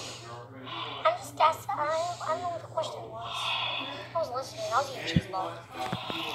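Voices talking in short phrases that the recogniser did not make out as words, over a faint steady hum, with a short knock about five seconds in.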